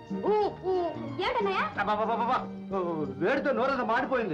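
A person's voice in short exclamations that sweep up and down in pitch, two brief ones first and then longer phrases, over a sustained note of the film's background music.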